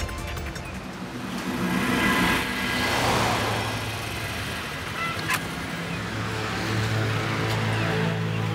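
Background music with a motor scooter riding up, its noise swelling a couple of seconds in, and a short click about five seconds in.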